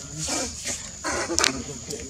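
Macaques calling: two short, harsh calls, the second louder, about a second in, over a steady high-pitched drone.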